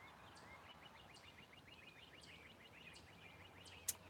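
Near silence with faint birdsong: a bird gives a rapid run of short, repeated chirps. A single sharp click comes just before the end.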